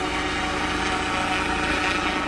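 Unmanned crop-spraying helicopter flying over rice paddies as it sprays pesticide: a steady engine and rotor drone.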